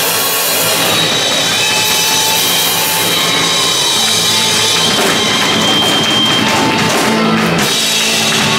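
Rock band playing live with electric guitar, bass guitar and drum kit: an instrumental passage without vocals, steady and loud throughout.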